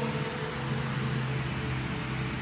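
Electronic keyboard holding a soft, steady low chord, over a faint hiss.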